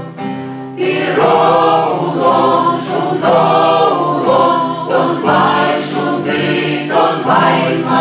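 A mixed choir of men and women singing an Udmurt folk song with acoustic guitar accompaniment. The guitars sound alone briefly, then the full choir comes in loudly about a second in and sings on in phrases.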